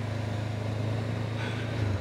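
Honda CB500F's parallel-twin engine running steadily at low road speed, a constant low drone under wind and road noise.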